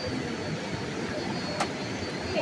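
Steady rush of a river running over rocks, with a single sharp click about one and a half seconds in.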